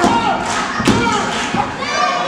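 Heavy thuds of wrestlers' bodies striking the wrestling ring mat, one right at the start and another about a second in, over a crowd shouting in a hall.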